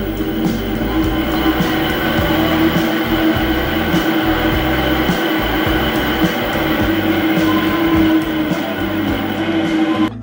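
Brushless e-bike hub motor, an old 24 V Sparta rear hub converted to a 36 V front hub, spinning its unloaded wheel on a stand: a steady hum with higher steady tones above it, over a low rumble with irregular light ticking. The sound drops away right at the end.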